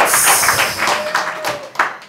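Studio audience clapping, fading away over about two seconds.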